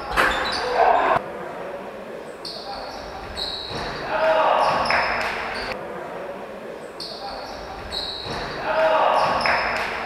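Sounds of an amateur basketball game echoing in a large sports hall: players' voices with ball and court noise.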